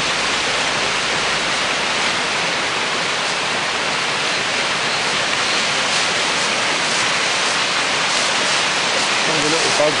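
A brook in flood, swollen over its banks: fast muddy water rushing and churning in a steady, loud, unbroken wash.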